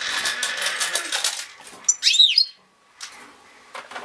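Caged goldfinches: a burst of fluttering and rustling, then one loud chirp that rises and falls in pitch about two seconds in.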